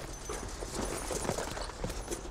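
Film soundtrack of a car-interior scene: several light, irregular taps and clicks with faint rustling, the sound of people handling clothing and objects inside a car.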